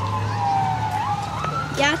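Go-kart engines running on the track: a whine that falls slowly as a kart slows, then climbs quickly about halfway through as it speeds up again.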